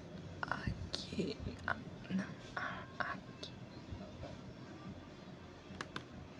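A person whispering in short, broken bursts that carry no clear words, with a single sharp click near the end.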